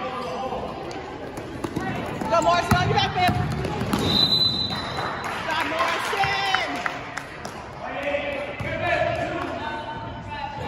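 A basketball bouncing on a gym floor amid players' and spectators' shouts, with one short referee's whistle blast about four seconds in as play is stopped.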